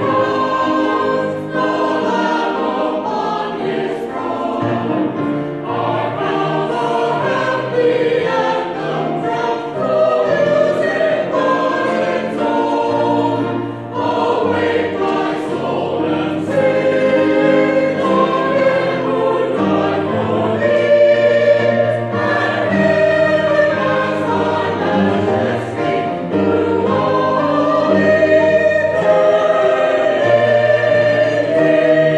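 Mixed church choir of men and women singing an Easter anthem, accompanied on a grand piano. The singing carries on without a break.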